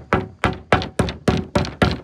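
A paint brush knocking repeatedly on a metal paint can, about four quick knocks a second, each with a faint metallic ring.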